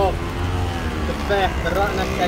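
Steady low rumble of street traffic, with people talking in the background for the second half.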